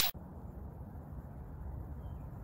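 Faint, steady, fluctuating low background rumble of an outdoor handheld recording. The tail of a whoosh sound effect cuts off at the very start.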